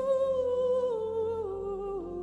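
Woman's voice through a microphone holding one long wordless note that steps slowly down in pitch, over soft sustained backing chords.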